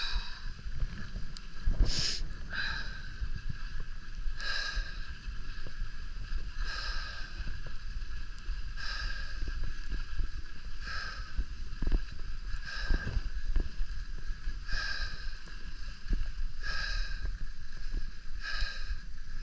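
Skis sliding down groomed snow, the edges scraping in a rhythmic swish on each turn about every two seconds, over a low rumble of wind on the microphone.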